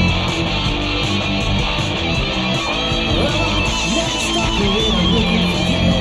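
A mid-1980s hard rock band playing an original song: electric guitar over bass and drums. It is a raw recording made on a four-track tape machine.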